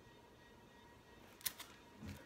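Quiet room tone, broken about one and a half seconds in by one short crackle of a vinyl record's sleeve being handled as the LP comes out of its jacket.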